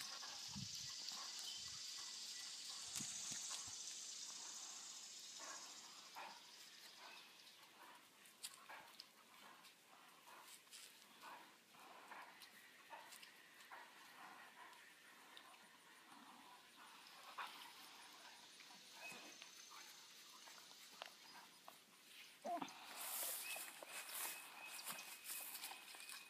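A dog quietly chewing and tugging on its leash: faint scattered clicks and rustles, with a faint high hiss in the first few seconds and a louder stretch of rustling near the end.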